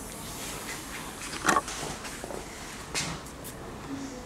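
Vinyl car-wrap film being handled and smoothed by gloved hands: quiet rustling, with one short sharp crackle about a second and a half in and a smaller one near three seconds.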